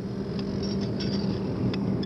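Steady low rumble with a constant low hum and a few faint clicks.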